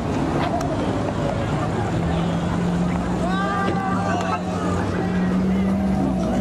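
A car engine holding a steady note from about a second and a half in, over a crowd, with people shouting a few seconds in.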